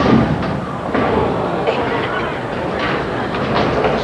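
Bowling-centre ambience: the pin crash dies away at the start, then a steady rumble of lanes and pinsetter machinery with crowd murmur.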